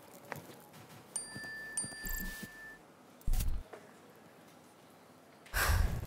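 Phone message-alert chimes: two bright electronic dings in quick succession about a second in, the sign of incoming messages. A short low thump follows, and a louder burst of noise comes near the end.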